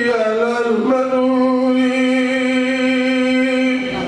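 A man's voice singing, bending in pitch for about a second and then holding one long steady note for about three seconds.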